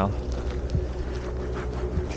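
Wind buffeting the camera's microphone, a steady low rumble, with a few faint clicks over it.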